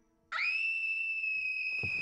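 A high whistling tone that starts about a third of a second in, slides quickly up and then holds one steady pitch.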